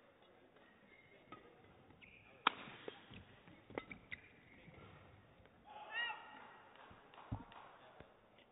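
Badminton rally: sharp cracks of rackets striking the shuttlecock, the loudest about two and a half seconds in and two more a little over a second later. A short squeak about six seconds in and a heavy footfall thud near the end.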